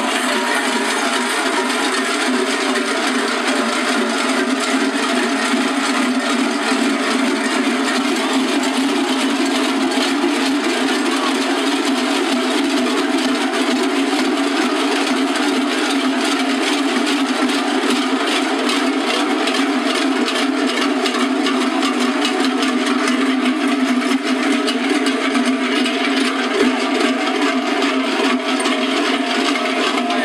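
Many large cencerros (cowbells) strapped to the backs of a marching troupe of bell-wearers clang together with every step. They make one dense, steady, loud din.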